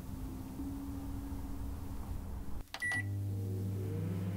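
Sound effects of a virtual-reality kitchen simulation: a low steady hum, then a click and a short high beep a little under three seconds in, after which a louder, deeper steady hum sets in.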